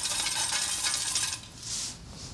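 Coins rattling and jingling inside a collection tin as it is shaken, a dense run of small metallic clinks that stops about one and a half seconds in.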